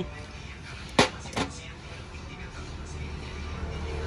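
Two sharp clicks, about a second in and less than half a second apart, as a mounting bracket is fitted to a small LED motorcycle driving light, over a low steady hum.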